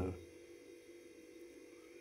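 Faint steady hum with a low, even tone: background room tone, after the last word of a man's speech trails off at the start.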